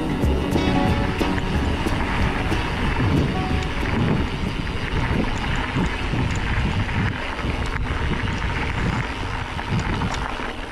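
Background music fading out within the first couple of seconds, giving way to wind buffeting the microphone and the rumble and rattle of mountain bike tyres rolling over a rough dirt track.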